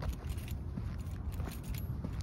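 Footsteps of sneakers on a concrete sidewalk at a walking pace, with light jingling of carried keys and a steady low rumble on the microphone.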